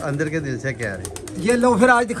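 Domestic pigeons cooing in a loft, with a man's voice mixed in.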